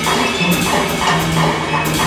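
Live jazz combo playing: a bowed violin over a drum kit, with regular cymbal strokes about twice a second and a low held note underneath.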